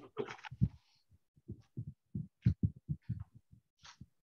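Soft, irregular low knocks and taps on a wooden conference table, about fifteen in two and a half seconds starting about a second in, from a pen writing and hands working papers.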